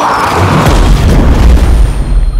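Film battle sound effects: a loud, deep explosion boom rising about half a second in over a dense din of battle, as soldiers charge through smoke.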